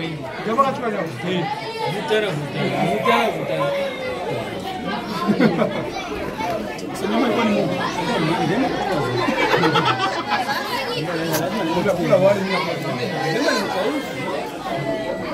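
Many people talking at once around tables: the steady, overlapping chatter of a crowd of diners, with no single voice standing out.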